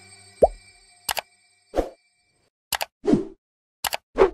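Animated end-card sound effects: a quick falling pop, then a string of short, sharp clicks and pops, some in quick pairs, with silence between them.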